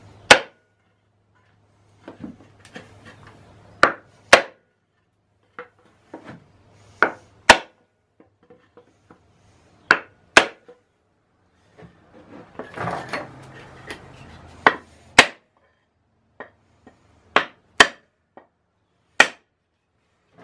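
A wooden board struck down onto the pistons of a seized Ford flathead V8 block: about a dozen sharp wooden knocks a second or more apart, some in quick pairs. The blows are meant to break rust-stuck pistons free in a locked engine.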